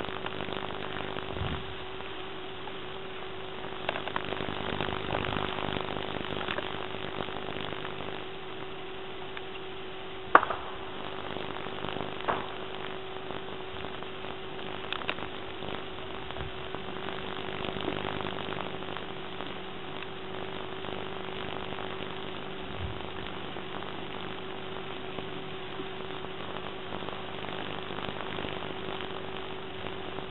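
Steady electrical hum and hiss of an old camcorder recording, broken by a few sharp cracks, the loudest about ten seconds in and a smaller one about two seconds later.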